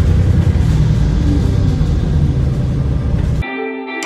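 A loud low rumble that cuts off suddenly about three and a half seconds in, when guitar background music starts.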